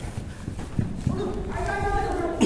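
Running footsteps thudding on artificial turf close to the microphone, with a man calling out in the second half.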